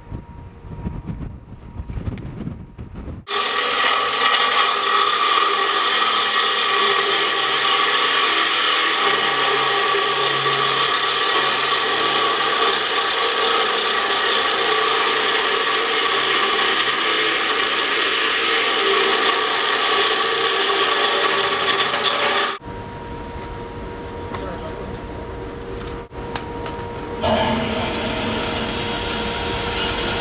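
Reciprocating saw with a metal-cutting blade cutting through a rusted structural steel column, starting abruptly about three seconds in and running steadily for nearly twenty seconds before stopping suddenly. A quieter steady noise with a faint hum follows.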